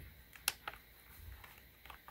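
A sharp click about half a second in, then two fainter clicks, from a handheld radio control transmitter being handled.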